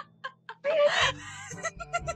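A loud vocal sound from a person, about half a second long and starting just over half a second in, followed by a few short broken sounds.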